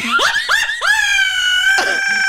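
A woman shrieking with laughter: a few quick rising squeals, then one long, very high-pitched scream held from about a second in.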